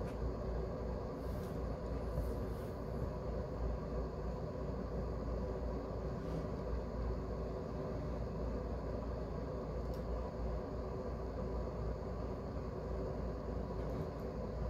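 Steady low background rumble with a faint hum, a room tone with no break, with a few faint scratches of a ballpoint pen underlining on paper.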